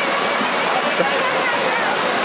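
A fast river running over a stony riffle, a steady loud rush of white water.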